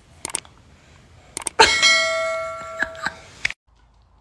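A few small clicks, then a single sharp metallic strike that rings like a bell, its tones fading over about a second and a half before the sound cuts off suddenly.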